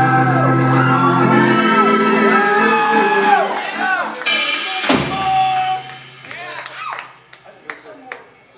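Live ska band (electric guitar, bass, drums, horns) holding a final chord with notes bending in pitch, then striking a closing hit about four and a half seconds in. After the hit the sound dies away to scattered noise.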